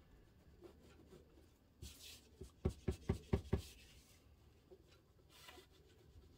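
Cotton swab dampened with rubbing alcohol scrubbing dried glue off the rim of a glass plate: faint scratchy rubbing in short strokes. About halfway through comes a quick run of about six low knocks, the loudest part.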